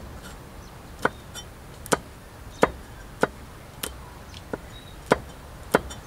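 Cleaver chopping red chilies on a thick round wooden chopping board: sharp knocks of the blade striking the wood, about ten in all at an uneven pace of one or two a second.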